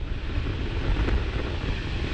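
Atlas V rocket with its main engine and solid rocket boosters firing in ascent: a steady, deep rumbling roar with a noisy crackling hiss over it.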